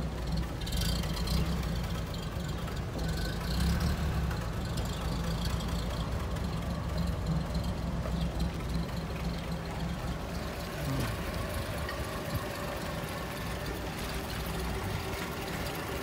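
A 1934 Bentley's engine idling steadily.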